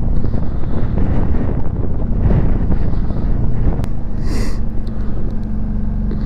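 Wind buffeting the microphone over the steady running of a Suzuki V-Strom 650's V-twin engine as the motorcycle climbs a mountain road.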